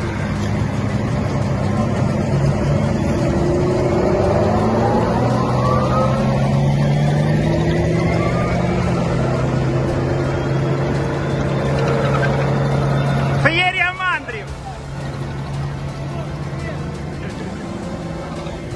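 Tracked M113 armored personnel carriers driving past in a column, their diesel engines running loud with a slowly rising whine as they go by. About thirteen and a half seconds in a voice gives a brief loud shout, and the engine sound then falls away somewhat.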